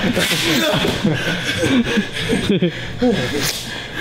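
Men talking and laughing, the words indistinct.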